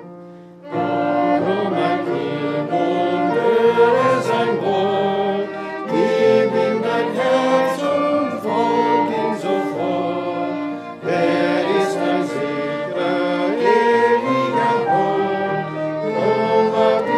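A congregation sings the second verse of a German hymn, accompanied by piano, flute and two violins. After a brief pause at the start, the singing comes in just under a second in, in phrases of about five seconds.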